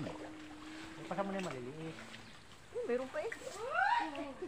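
Voices of people at the pond without clear words: a long held vocal note, then rising calls near the end.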